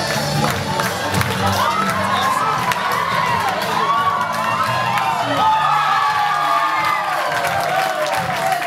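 A crowd cheering and shouting, many voices overlapping, with music underneath.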